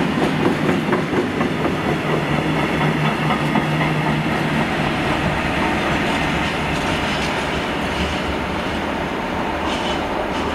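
A freight train of hooded, covered wagons passing close by, with steady wheel-on-rail noise from the wagons. It eases slightly toward the end as the last wagons move away.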